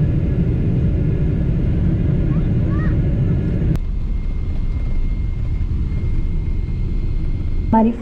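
Jet airliner engines and airflow heard from inside the cabin on the descent: a loud, steady low rumble. About four seconds in it cuts off suddenly to a quieter, steady cabin hum.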